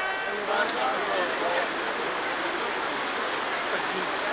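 Rushing stream water over rocks, a steady hiss, with faint indistinct voices over it.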